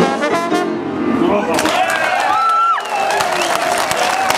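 A New Orleans jazz band with trumpet and trombone plays the final bars of a tune. About a second and a half in the music stops and the audience breaks into applause, with a few voices calling out over it.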